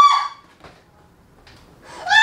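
A woman's high-pitched cry of pain, from hard pressure on her leg during a massage, fades out in the first half second. A second loud cry breaks out just before the end.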